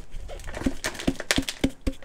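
Plastic flower pot being knocked and shaken to loosen a root ball, with potting soil crumbling away: a run of about a dozen irregular sharp knocks.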